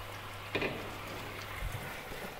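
A pan of braised duck simmering with a faint steady hiss, with a light click about half a second in and a soft knock near the end as cabbage bundles are placed into it.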